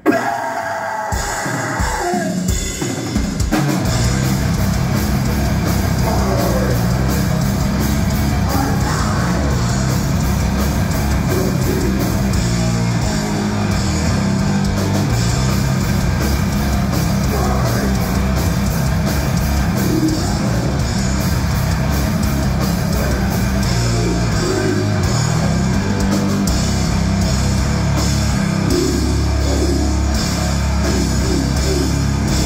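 Death metal band playing live on distorted electric guitar, bass guitar and drum kit. The song opens with a few separate heavy hits that ring out, then the full band comes in at a fast, dense pace about four seconds in and carries on without a break.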